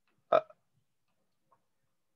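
A single short hesitant spoken 'uh', then silence on the call.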